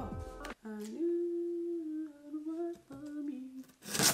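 A woman humming one long, drawn-out 'uhh' that dips lower near the end, just after background music cuts off about half a second in. A short, loud, sharp noise comes right at the end.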